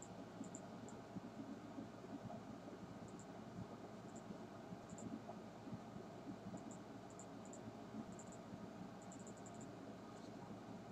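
Faint room tone from the narrator's microphone: steady hiss with scattered light ticks.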